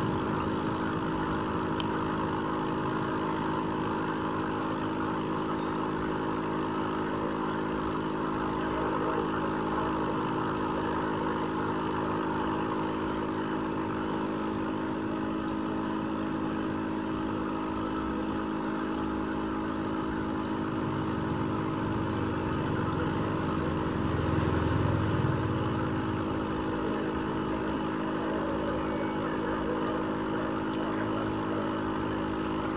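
Aquarium pump humming steadily, with water noise around it. A fast, high-pitched ticking runs over the hum and stops briefly a few times.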